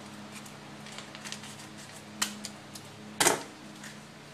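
Kitchen scissors snipping open a cheese-sauce packet, with a few small clicks and a sharp knock a little after three seconds in, over a steady low hum.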